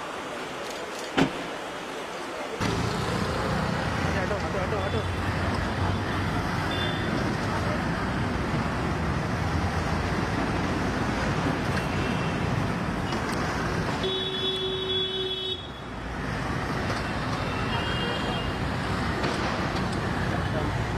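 Outdoor street noise with passing traffic and indistinct voices, which grows louder and fuller about two and a half seconds in after a single sharp click. A short steady tone sounds near the three-quarter mark.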